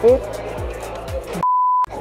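Background music with a steady beat, then near the end a single electronic beep of one steady pitch, about half a second long, during which the music drops out completely.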